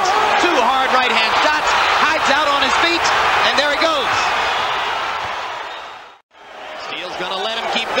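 Arena crowd shouting and cheering during a boxing bout, with many overlapping voices. It fades out to silence about six seconds in and comes back up shortly before the end.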